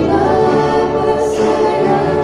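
A trio of girls singing a Christian hymn in harmony into microphones, holding sustained notes.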